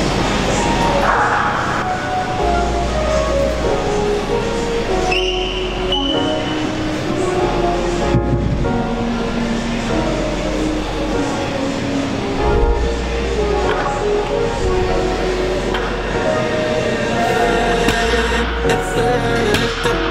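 Background music with a bass line that shifts every second or two under a melody.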